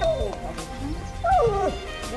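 A small dog whining in high, falling whimpers, the longest about a second and a half in, over background music.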